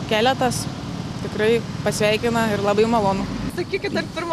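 A woman talking, with a steady low hum of road traffic behind her voice.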